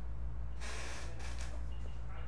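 Steady low electrical hum from the bench equipment, with a short breathy burst of noise, like a sniff or exhale close to the microphone, about half a second in that lasts under a second.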